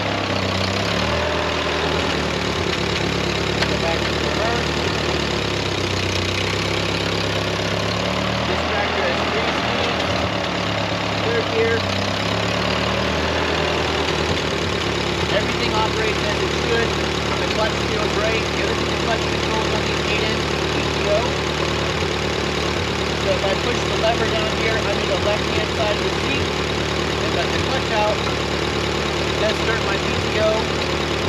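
Ford 8N tractor's four-cylinder flathead engine running while the tractor is driven through reverse and forward gears in a transmission check. The engine note shifts during the first half, then settles to a steady idle.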